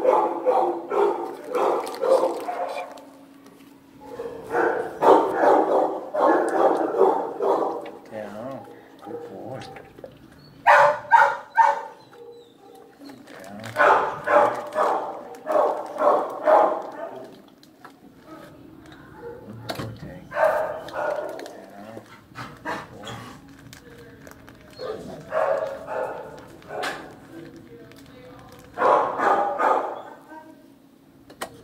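Dogs barking in kennels, in bursts of several barks every few seconds, over a faint steady low hum.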